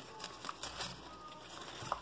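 Faint rustling and a few small clicks of a satin ribbon being pulled off its spool and handled.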